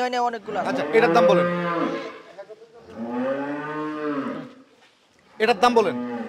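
Holstein Friesian dairy cow mooing twice: two long calls, each rising and then falling in pitch, the second starting about three seconds in.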